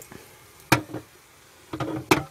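Stainless steel kettle set down on top of a frying pan of eggs as a makeshift lid: one sharp metal clunk a little before halfway, with more handling clatter starting near the end.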